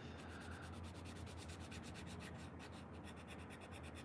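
Skin-coloured pencil rubbing lightly on paper in rapid back-and-forth shading strokes, about ten a second, faint.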